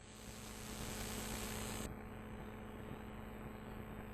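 Steady hiss and electrical mains hum from an open microphone line, with no one speaking; the hiss loses its upper, brighter part about two seconds in.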